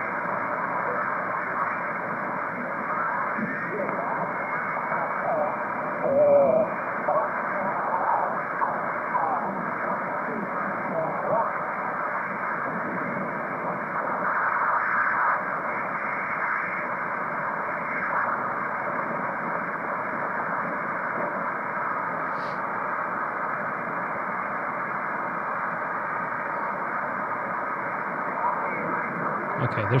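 HF single-sideband receiver audio on the 40-metre band through a Heil PRAS equalizer and speaker: steady static hiss with weak, garbled voices buried in the noise, too faint to make out, as the receiver is tuned across the band.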